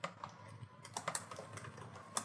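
Computer keyboard being typed on: a quiet run of irregular key clicks.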